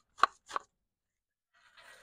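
Two sharp clacks about a third of a second apart as a spatula knocks against a ceramic bowl of frozen shredded hash browns. Near the end a faint sizzle starts as the hash browns go down on the hot, oiled griddle.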